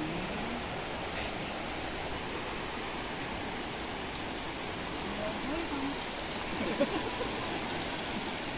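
Steady rush of a flooded river's fast-flowing water, an even hiss with no breaks, with a brief knock or splash about 7 seconds in.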